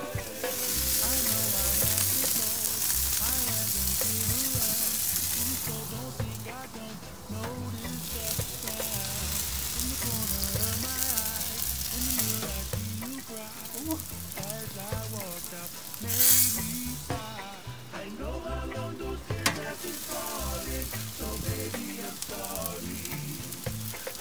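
Glazed chicken pieces sizzling on a hot grill grate over a wood fire: a steady hiss, loudest in the first several seconds, with a brief louder flare of hiss past the middle. Background music plays underneath.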